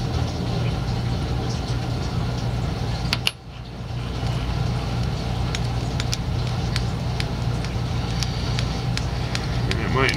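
A steady low hum runs under faint, scattered light ticks as tying thread is wrapped from a bobbin onto a fly hook. The sound drops out briefly about three seconds in.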